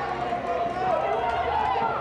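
Voices talking, not made out as words, over the open-air hubbub of a stadium crowd.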